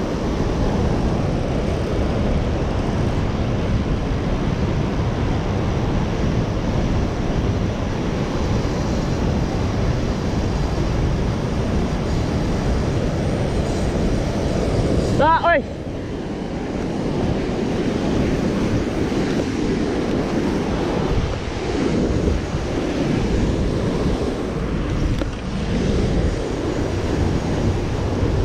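Steady rush of churning white water pouring out below a canal spillway, with wind buffeting the microphone.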